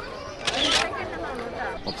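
A phone camera's shutter sound: one short click, with faint voices of people behind it.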